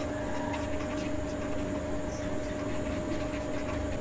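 Steady background hum with a faint pitched tone running through it, the lower of two tones fading out about three seconds in, and faint scratching of a felt-tip marker writing on paper.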